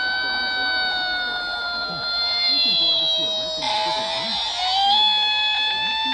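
A steady electronic buzzing tone with several overtones. It sags slightly in pitch midway and climbs back, with a brief rush of noise over it about halfway through.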